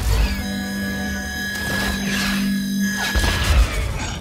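Film soundtrack of an aerial fight: dramatic score with held tones, mixed with whooshing flight and thruster effects. A heavy low rumble hits about three seconds in.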